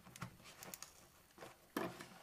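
Faint rustling and scraping of a small cardboard package being handled and its label tugged, with scattered light clicks and one louder click near the end.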